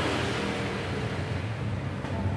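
Steady low background hum, with a faint even hiss above it, in a pause between spoken counts.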